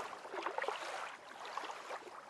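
Running water, an even rushing sound with small irregular gurgles, getting quieter about a second in.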